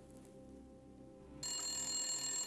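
A telephone starts ringing about a second and a half in, after a quiet pause: an electronic ring of several high, steady tones.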